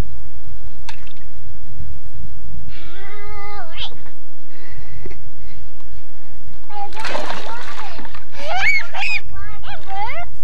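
A child jumps from a board into a shallow plastic kiddie pool, making a splash of water about seven seconds in that lasts about a second. High-pitched children's voices come before and after it.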